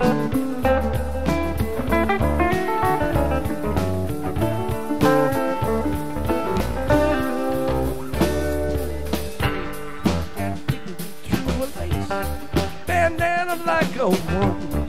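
A live rock band playing an instrumental stretch between vocal lines, with an electric guitar playing lead lines over the rest of the band.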